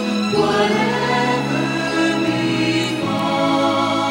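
Choir singing slow, held chords of a hymn with musical accompaniment, moving to a new chord a few times.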